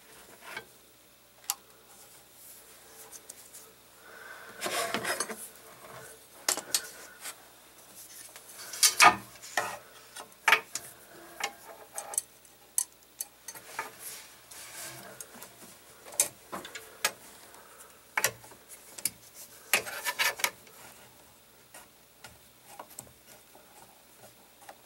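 Hands handling a plastic cable drag chain and a steel mounting strap against a metal plate: irregular clicks, clinks and brief scraping and rubbing, with a busier cluster of knocks about nine seconds in.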